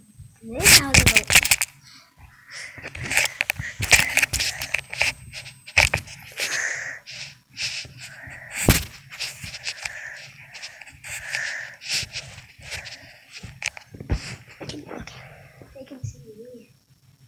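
A child's voice cries out loudly and briefly about a second in, followed by blanket fabric rustling and bumps of a phone being handled under the covers, with scattered knocks throughout.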